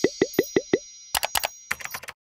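Editing sound effects on a video end card: a quick run of five cartoon pops, about five a second, each dropping in pitch, over the tail of a ringing chime. These are followed by two clusters of sharp clicks in the second half.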